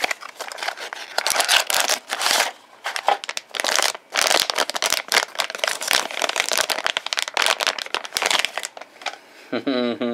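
Clear plastic wrapping around a circuit board crinkling and crackling irregularly as it is handled and pulled open. A man laughs briefly near the end.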